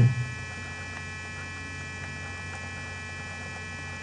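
Steady electrical mains hum in the recording, with several fixed high tones above it and a few faint ticks.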